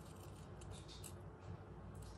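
Small sewing scissors snipping through a scrap of fabric: several faint, quick snips.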